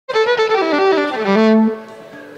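Fiddle playing a quick run of notes that steps downward and ends on a held low note, which stops short near the end.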